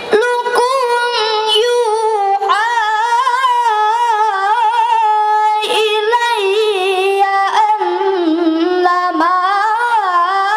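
A boy reciting the Quran in melodic tilawah style through a microphone: one high voice holding long, ornamented notes that waver and glide, with short breaks for breath several times, sinking lower near the end.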